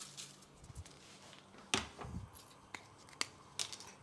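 Faint kitchen handling noise while seasoning is added by hand to cherry tomatoes on kitchen paper: a few scattered, sharp light clicks, the first and loudest a little under two seconds in, with soft rustling between them.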